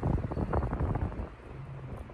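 Wind buffeting the phone's microphone in gusts, a rumble that eases off after about a second.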